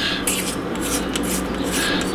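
A steady rasping, rubbing scrape of the suppressor kit's parts being handled by hand.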